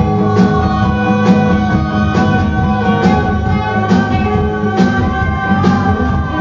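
A punk rock band playing loudly live: electric guitars hold sustained notes over drums, with a sharp drum or cymbal hit about once a second.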